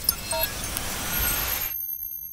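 Motion-graphics sound effect for an animated logo: a swelling whoosh of noise that cuts off suddenly near the end, with a few sharp clicks early on and high, thin chime tones that come in partway through and keep ringing.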